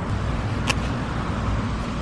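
Steady low rumble of outdoor background noise, with one brief sharp click about two-thirds of a second in.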